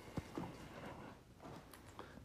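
A few faint, soft footsteps and scuffs on a dirt floor, otherwise quiet.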